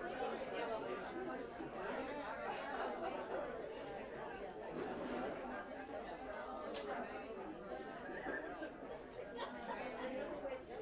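Indistinct chatter of an audience, several people talking at once.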